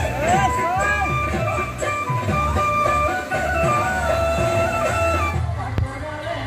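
Background music with guitar and a held melody line that steps from note to note over a steady bass; the sound thins out near the end.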